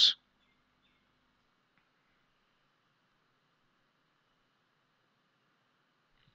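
Near silence with a faint steady hiss.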